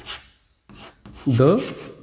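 Chalk scratching on a chalkboard in short strokes as a word is written. About one and a half seconds in, a man's voice says "the", louder than the chalk.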